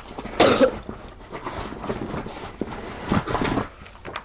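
A girl coughing: one loud cough about half a second in, and another around three seconds in.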